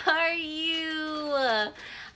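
A woman's voice holding one long sing-song note, a drawn-out baby-talk "you" that finishes her greeting "hi baby, how are you". It runs for most of two seconds and slides down in pitch at the end.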